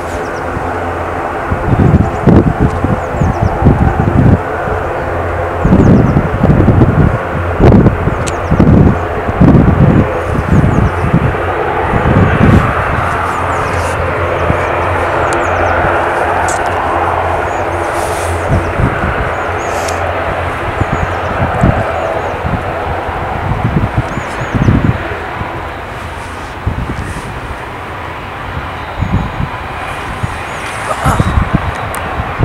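ATR turboprop airliner's twin turboprop engines and propellers running: a steady drone with several held tones that swells from about twelve seconds in as power comes up for the take-off roll, then eases off near the end as the aircraft moves away. Irregular low buffets, most likely wind on the microphone, come and go through the first half and are the loudest moments.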